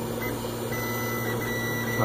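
A steady low mechanical hum with a thin high whine joining it partway through.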